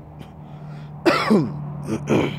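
A person clears their throat about a second in, then starts to cough near the end.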